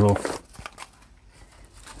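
Faint rustling and small ticks of a hand rummaging in a fabric pocket of a tool backpack and pulling out a silica gel sachet.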